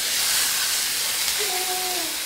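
Button mushrooms frying in a hot pan: a loud, steady sizzling hiss with steam, strongest in the first second and easing a little after.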